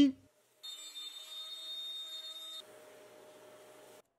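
Festool plunge router running on a trammel arm through an oak tabletop, a steady high-pitched whine. About two-thirds of the way through it drops to a fainter steady hum.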